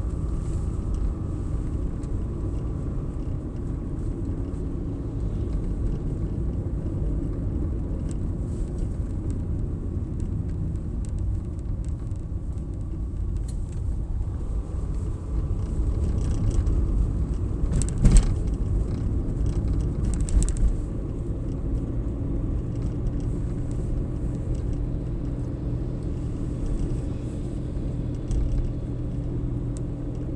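Steady low rumble of engine and tyres heard inside a moving car's cabin. A sharp knock comes about 18 seconds in, and a lighter one about two seconds later.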